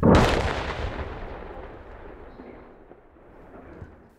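A single large explosion: a sudden loud blast right at the start that rumbles and fades away over about three seconds.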